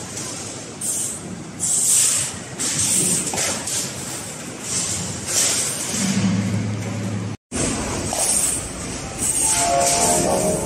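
Balls rolling along the metal rail tracks of a large kinetic ball-run sculpture, a continuous rumble with hissing, rattling swells. The sound drops out for a moment about seven and a half seconds in. Near the end comes a quick falling run of pitched notes.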